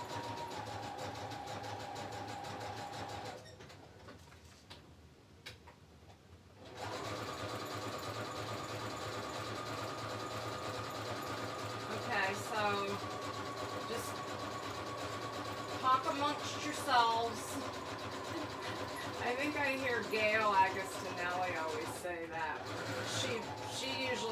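Electric sewing machine running a zigzag stitch through paper, a steady motor hum that stops for about three seconds a few seconds in, then starts again at a slightly higher pitch.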